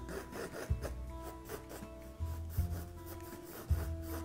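Paintbrush bristles rubbing acrylic paint onto a stretched canvas in short strokes, a soft scratchy brushing, with a few dull low bumps from the canvas.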